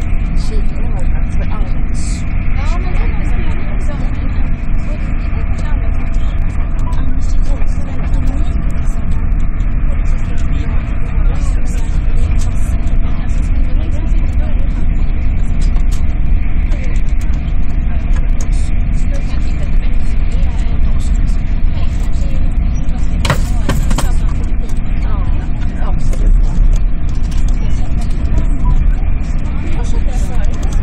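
Cabin noise of an SJ X2000 high-speed train at speed: a loud, steady low rumble of the running gear on the rails with a steady hum over it. About three-quarters of the way through, a brief louder rush of noise.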